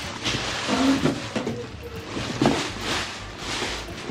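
Plastic packaging and a cardboard box rustling and scraping with irregular crinkles as a packed inflatable water slide is pulled out of its box.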